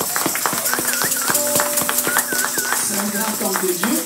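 Congregation clapping in a rapid, steady patter, with a few held keyboard notes underneath and scattered voices calling out; a voice speaks briefly near the end.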